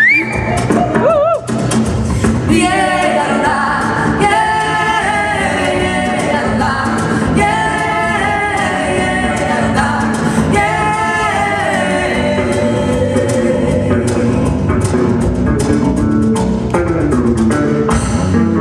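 Live bossa nova performance: two women singing a duet into microphones over instrumental accompaniment in a concert hall.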